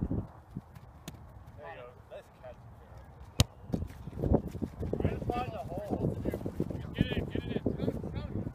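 Wind rumbling on the microphone with distant shouts from players, and one sharp smack of a kickball being kicked about three and a half seconds in.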